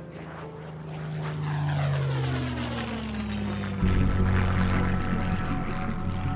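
Propeller aircraft engines droning as planes pass, the pitch sliding downward as the sound swells. About four seconds in it gives way abruptly to a louder, steady low engine drone.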